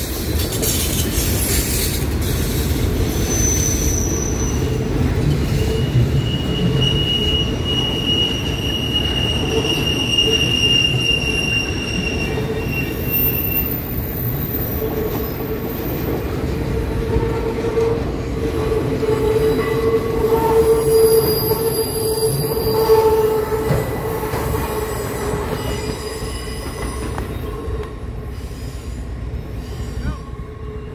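Freight cars rolling past with a steady low rumble, their wheels giving off long, high, steady squeals that fade in and out, several pitches overlapping.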